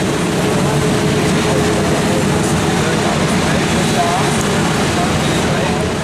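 Street-sweeping truck running steadily, with people talking around it.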